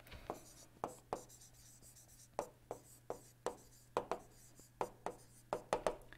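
Faint, irregular taps and short scratches of a stylus writing on a tablet screen, about fifteen light clicks over several seconds.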